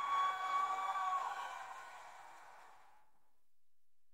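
The final note of the song's backing music: one held tone that slides up briefly, holds steady, then fades away by about three seconds in.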